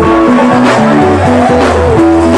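A live band playing: electric guitar lines over bass guitar and drums. One guitar note bends in pitch near the end.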